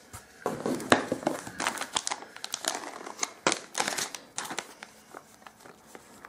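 Packaging being rummaged and handled: cardboard and a plastic cat-treat pouch crinkling and rustling as it is pulled from a parcel box, a dense run of crackles that thins out near the end.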